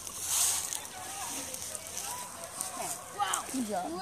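Faint, distant children's voices, with rustling and shuffling as a child climbs a rope net over dry leaves.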